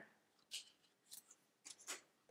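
Playing cards sliding and rubbing against each other, a few faint short scrapes as oracle cards are moved off the front of the deck by hand.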